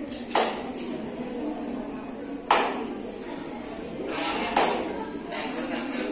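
Low murmur of voices in a hall, broken by three sharp knocks about two seconds apart.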